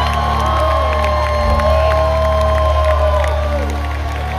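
A band holds a low sustained note on bass and keyboards while a concert crowd cheers and whoops, with long drawn-out whoops above the drone.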